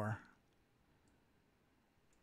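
A man's word trails off, then near silence with a couple of faint, sharp clicks.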